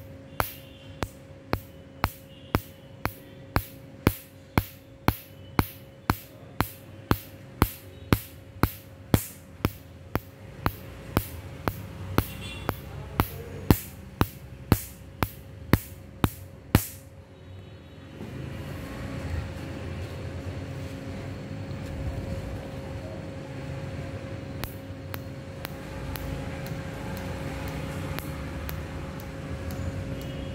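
Tattoo removal laser firing pulses on the skin: sharp snaps about twice a second over the steady hum of the laser unit, each snap a pulse striking the tattoo ink. The pulses stop about 17 seconds in, leaving the hum with a louder low rumble.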